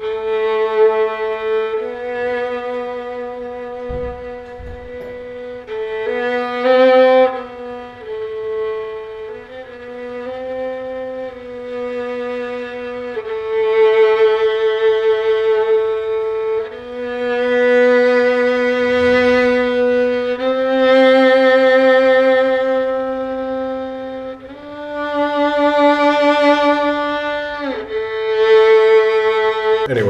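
Solo violin played with the bow: a slow, simple film-score theme in long held notes of a few seconds each, with vibrato on several of them.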